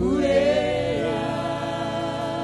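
Live gospel worship singing: a lead voice slides up into a long held note over a group of singers and sustained backing chords.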